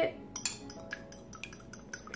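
A fork whisking a raw egg in a small ceramic bowl, the tines clinking quickly and irregularly against the bowl, starting about half a second in.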